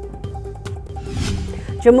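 News-bulletin background music holding a steady tone, with a whooshing transition effect about a second in; a newsreader's voice comes back in near the end.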